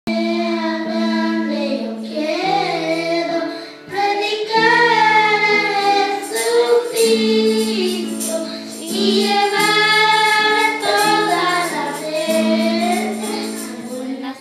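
A group of children singing together in Spanish over sustained instrumental accompaniment chords, the phrases rising and falling with short breaths between lines.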